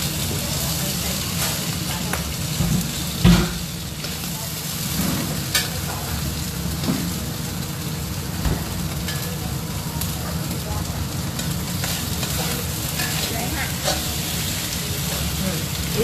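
Prawns frying in hot oil in a stainless-steel wok, sizzling steadily, while a metal spatula scrapes and knocks against the pan as they are turned; the loudest knock comes about three seconds in.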